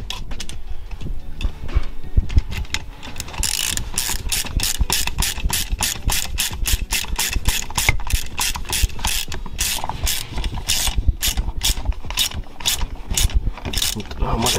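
Hand ratchet clicking in quick runs as it turns a steel cylinder stud into a Puch Maxi moped's aluminium crankcase, the clicks louder and steadier from about three seconds in.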